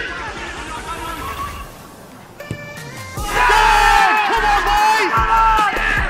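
Footballers calling out during an attack, then loud shouting and cheering at a goal from about three seconds in, over background music.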